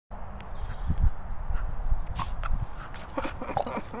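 Irregular low thuds and rustling from a small terrier's paws running across grass, with a few short, sharp noises in the second half.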